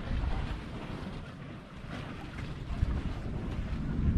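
Wind buffeting the microphone, a low gusting noise that rises and falls.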